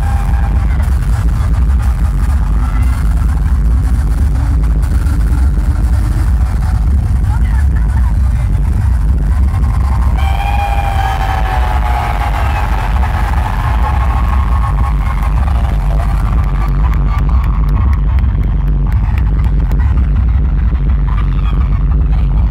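Live amplified concert music heard from within an arena crowd, with a heavy, steady bass and a singer's voice carrying the melody, strongest about halfway through.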